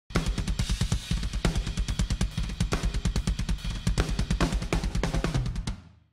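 A busy drum-kit groove as intro music: bass drum, snare, hi-hat and cymbals in quick, even strokes over a steady low bass line. It fades out quickly near the end.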